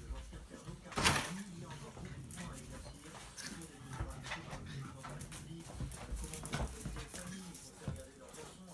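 A small dog and a German shepherd play-fighting, with low growling throughout and one loud, sharp bark about a second in. Many short clicks, like claws on a tiled floor, come through with it.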